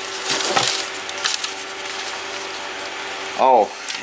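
Plastic bags and bubble wrap rustling and crinkling as hands rummage through packed items in a cardboard box, with a few light clicks and knocks.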